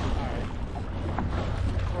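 A boat's outboard motor running steadily at trolling speed, a continuous low hum, under wind and water noise.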